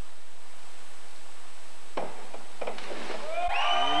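A diver's back dive off a 1-metre springboard: a sharp knock from the board at takeoff about halfway through, then further knocks and a low thump as she enters the water, over a steady arena hiss.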